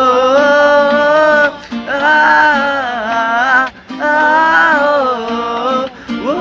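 A few male voices singing together in long held notes, in three phrases with short breaths between, accompanied by an acoustic guitar.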